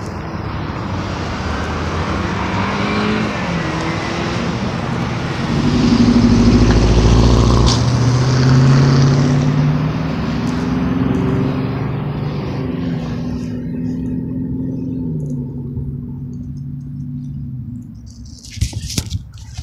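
A motor vehicle accelerating through the gears: the engine note climbs and drops back at each upshift, loudest about six to nine seconds in, then fades as it moves away, over the steady hiss of road traffic.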